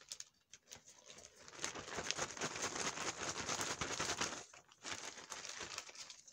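Clear plastic zip-top bag crinkling as a hand rummages inside it to draw a name: a dense run of small crackles for a few seconds, a brief pause, then a little more crinkling.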